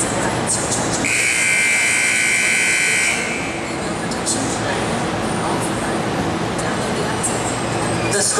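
Arena timer buzzer sounding one steady tone for about two seconds, starting about a second in: the signal that the run's time has expired.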